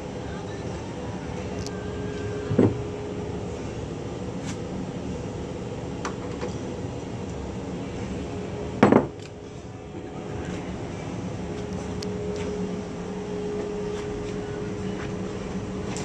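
Steady shop hum with a faint held tone, broken by a light wooden knock about two and a half seconds in and a louder, sharp knock just before nine seconds, as a square-headed wooden mallet is handled and set against a plywood workbench.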